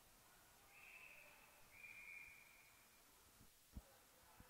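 Faint referee's whistle, two blasts in a row, blowing a faceoff dead. A soft knock near the end.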